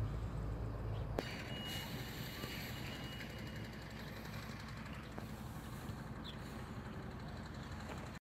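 Faint, steady low engine rumble with a single click about a second in.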